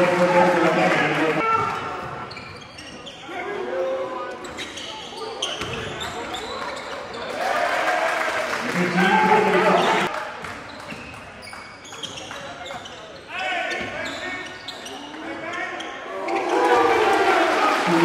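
A basketball bouncing repeatedly on a gym's hardwood floor during play, with voices calling out at times.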